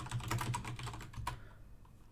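Rapid clicking of computer keyboard keys, dense for about the first second and then thinning out, over a low steady hum.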